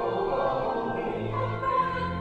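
Church choir singing, with sustained pipe organ accompaniment underneath.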